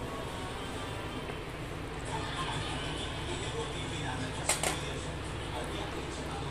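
Water heating in a pan on the stove, a steady hiss as small bubbles start to rise, with a brief sharp clink about four and a half seconds in.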